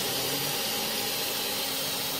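Zebra stainless-steel pressure cooker venting steam through the valve on its lid, a steady hiss. The cooker has come up to pressure, the point from which the cooking time is counted.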